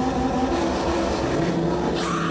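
A car engine running, laid over electronic music.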